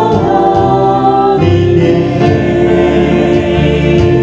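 A church praise team of mixed men's and women's voices singing a worship song in slow, held notes, with keyboard accompaniment.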